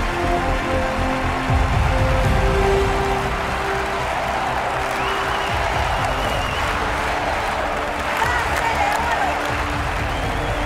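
Studio audience applauding and cheering over loud music playing.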